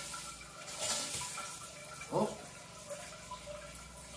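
Toilet-seat bidet attachment running its front-wash spray, a steady hiss of water. The water supply has only just been turned back on, so the pressure is still building and the spray starts weakly.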